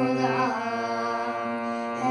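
Harmonium holding a sustained chord under a boy's voice singing a drawn-out, slightly wavering note of a Hindi film bhajan melody.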